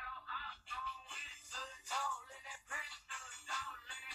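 A man singing in short phrases, with a thin, quiet sound as from a phone live-stream recording.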